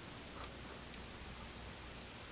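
Faint scratching of a mechanical pencil's lead sketching strokes on paper.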